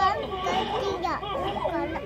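A young child's high-pitched voice chattering playfully, with no clear words.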